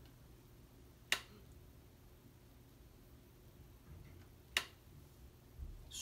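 Quiet room tone with a faint low hum, broken by two short sharp clicks, one about a second in and the other about four and a half seconds in.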